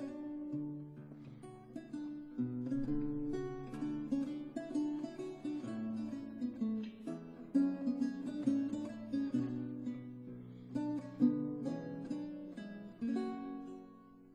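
Lute playing an instrumental introduction, a run of plucked notes and chords in a ballad melody, without voice.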